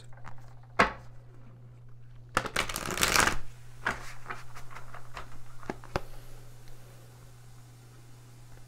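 A deck of oracle cards being shuffled by hand: a single snap about a second in, a dense rush of card noise around two and a half seconds, then a run of light card clicks that thins out and stops.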